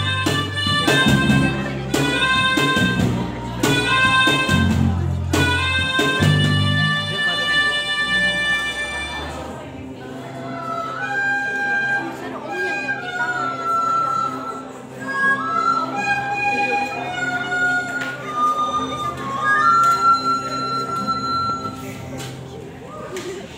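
A school ensemble of melodicas with guitars and keyboard playing: loud repeated chords over a heavy bass pulse roughly every two seconds, then from about ten seconds in a softer passage with a single melody of held notes.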